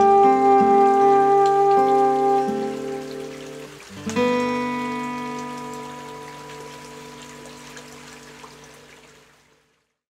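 Soprano saxophone holds a long final note over acoustic guitar chords. About four seconds in, a last guitar chord is struck and rings out, fading away near the end. Running stream water sounds faintly beneath.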